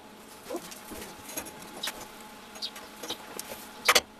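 Light scrapes and taps of hand tools being handled on a steel workbench, scattered every half second or so, with a louder metal clank near the end.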